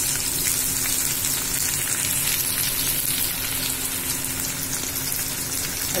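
Freshly added sliced onions frying in hot mustard oil in a stainless steel pan: a steady sizzle with fine crackling.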